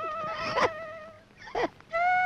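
A single held flute note from the film's background score, fading out about a second in. Over it come two short cries, the second falling in pitch near the end.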